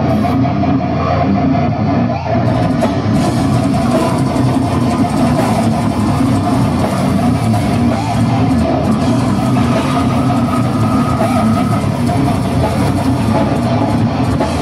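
A brutal death metal band playing live: electric guitar riffing over a drum kit, loud and unbroken.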